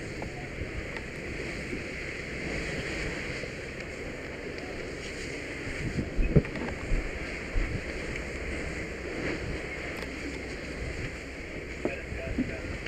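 A steady rushing noise, with a cluster of dull knocks and bumps about six seconds in.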